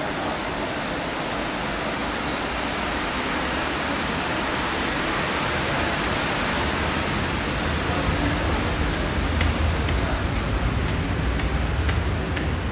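Steady hiss and low rumble of a metro station's underground passageway. The rumble grows louder in the second half, and a few faint ticks come near the end.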